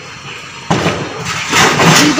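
A motor vehicle's engine running as an even noise that comes in suddenly about two-thirds of a second in.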